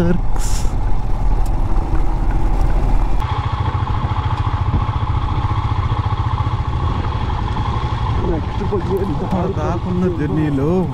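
Royal Enfield motorcycle engine running steadily under way, with a low pulsing exhaust rumble and wind noise on the handlebar-mounted camera's microphone. The sound shifts abruptly about three seconds in, and a man starts talking near the end.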